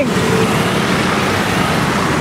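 Buses driving past close by on a road: a steady, loud rush of engine and tyre noise.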